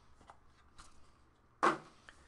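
Trading cards being handled: a few faint slides and taps, then a louder brief rustle about one and a half seconds in as a card is set down on the mat.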